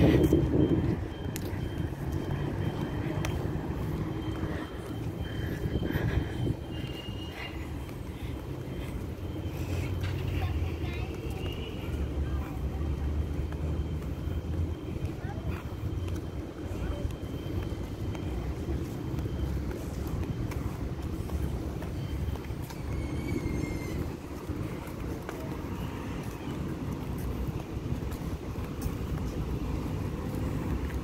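Outdoor street ambience: distant road traffic over a steady, uneven low rumble.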